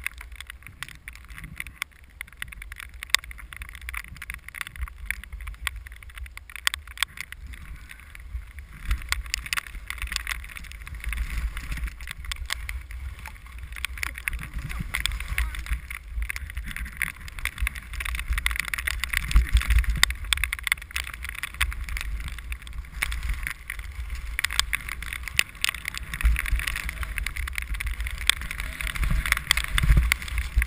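Skis hissing and scraping over snow during a downhill run, with wind rumbling on the camera's microphone and scattered sharp clicks. The hiss grows louder about a third of the way in.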